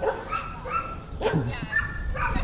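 Dogs whining and yipping: a few short high-pitched calls, then a lower, falling call about a second and a half in.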